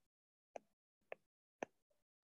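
Three short, faint clicks about half a second apart in near silence: a stylus tapping the tablet's glass screen while writing.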